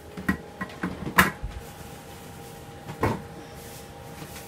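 Several short knocks and bumps of handling noise from a phone held close and moved about. The loudest comes a little over a second in and another about three seconds in, over a faint steady hum.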